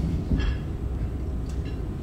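Low, steady rumble of room noise, with a brief faint voice sound about half a second in.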